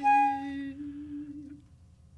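A voice humming one low sustained note that fades away after about a second and a half.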